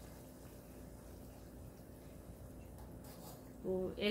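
Faint, steady sizzling and bubbling of fish steaks frying in an oily onion-tomato masala in a pan, over a low steady hum.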